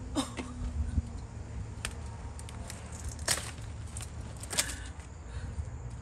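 Pruning shears snipping through kohlrabi leaf stalks: a handful of short, sharp cuts spread out, the loudest about three and four and a half seconds in.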